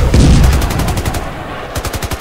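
War sound effect: two bursts of rapid automatic gunfire, one about half a second in and another near the end, over a deep, continuous rumble of explosions.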